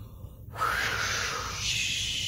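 A woman blowing a long, breathy 'whoosh' through rounded lips to imitate the wind. It starts about half a second in as a hollow 'whoo' and turns into a sharper, higher 'sh' partway through.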